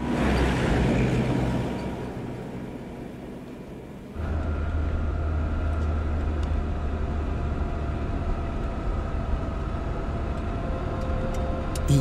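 A jeep drives close past, its engine and tyre noise fading away over about four seconds. Then a sudden change to the steady low engine drone heard from inside a moving vehicle.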